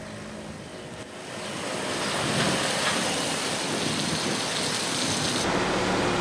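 Disinfectant spray hitting the body of an emergency vehicle: a steady hiss like heavy rain that builds up over the first two seconds and then holds.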